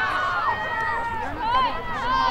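Several high-pitched girls' voices shouting and calling out, overlapping one another, during play on a lacrosse field.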